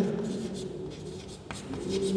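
Chalk writing on a blackboard: soft scratching of the chalk, with a couple of short taps about a second and a half in.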